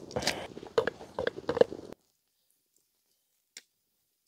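Freshly boiled ribbon pasta lifted dripping from the boiling pot and slapping into a metal pan: a few wet splats and water drips over a steady hiss. About halfway through the sound cuts off abruptly to silence, with one faint click after it.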